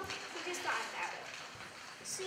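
A child's voice speaking briefly in the first second, then quiet room noise.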